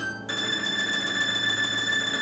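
Domras with piano accompaniment: a quick rising run lands about a quarter second in on one high note, held steadily for about two seconds.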